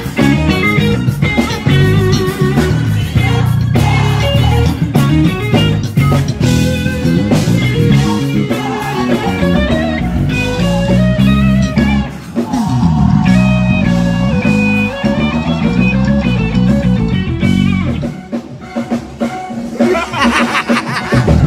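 Live gospel band playing a song, with a drum kit and electric guitar lines over a heavy low end.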